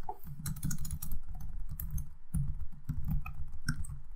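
Typing on a computer keyboard: a run of irregular keystrokes with a brief pause a little past halfway.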